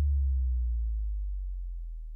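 A single low bass tone left ringing after the rest of a slowed-and-reverb lofi track cuts off, fading steadily away as the song ends.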